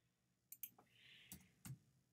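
Faint clicks of a computer keyboard and mouse while a text caption is edited: four short clicks in the second half, with a brief soft hiss between them.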